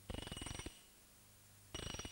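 Chrome socket ratchet wrench being worked, its pawl clicking rapidly with a metallic ring, in two short bursts: one at the start and one just before the end.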